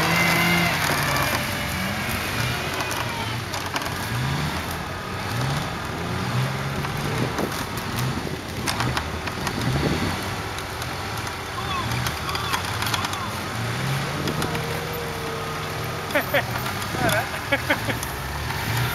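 Off-road 4x4 engine running through mud, its note rising and falling as the throttle is worked, with people's voices over it.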